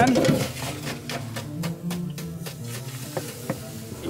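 Hot nonstick frying pan sizzling and crackling as it meets water in a wet sink, loudest at first and then settling, over background music.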